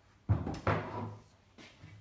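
Two wooden knocks, about a third of a second apart, as a thick burr horse chestnut board is tilted up and set down against a wooden workbench; the first knock is the louder.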